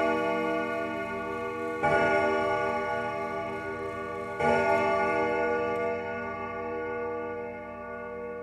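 A ringing musical chord with a bell-like tone, struck again about two seconds in and again about four and a half seconds in, each strike fading slowly as the closing notes of the song.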